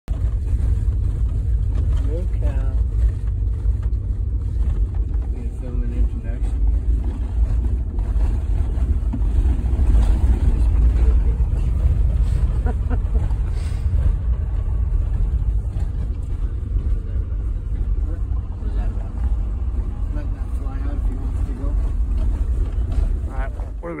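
Vehicle driving on a dirt road: a steady, loud low rumble of engine and road noise, with wind buffeting the microphone.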